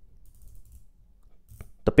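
Unidirectional 120-click dive watch bezel being turned by hand, a quick run of faint, metallic ratcheting clicks in the first second.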